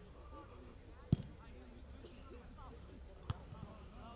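A football kicked hard: one sharp thud about a second in, then a second, softer thud about two seconds later. Distant players are calling out.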